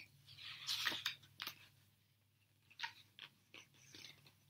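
Page of a picture book being turned: a paper rustle lasting about a second, followed by a few soft scattered clicks of the paper and hands.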